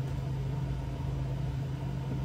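Steady low hum with a faint even hiss, with no other events.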